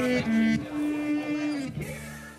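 Electric guitar through an amp sounding a few single notes, one held steadily from about half a second in until it stops near the end.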